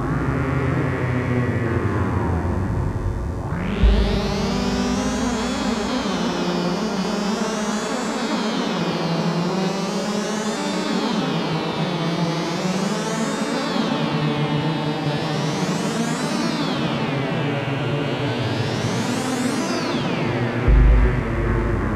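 Generative electronic music from a synthesizer whose notes are driven by a chaotic system: layered pitched tones, with the brightness sweeping up and down in slow waves every two to three seconds. A single low kick-drum thump comes about four seconds in.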